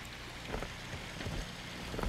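A few soft footsteps on loose rock rubble over a steady outdoor hiss.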